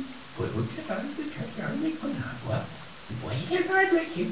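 Steady hiss of rain falling, with a voice talking or vocalizing over it.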